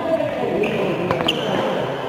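Badminton rally: sharp clicks of rackets striking the shuttlecock, about a second in, and players' shoes squeaking and stepping on the court floor, echoing in a large hall.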